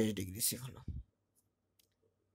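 A man's voice trails off in the first second. Then near silence, broken by a couple of faint ticks from a pen writing on paper.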